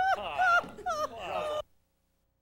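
Several voices making quick high sliding swoops, mostly falling in pitch, overlapping one another, like singers' vocal glides; the sound cuts off suddenly about one and a half seconds in.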